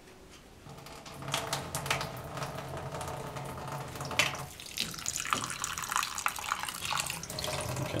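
Kitchen tap turned on about a second in, water running and splashing into a stainless steel sink as egg white is rinsed off a yolk held in the hand.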